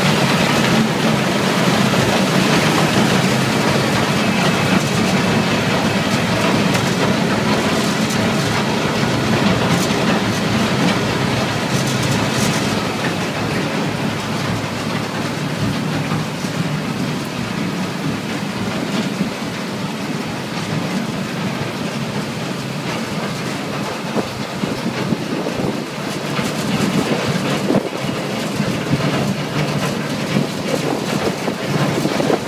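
Tyre shredding and crushing line running, with belt conveyors carrying shredded rubber chips: a steady, dense mechanical rumble with continuous fine clattering.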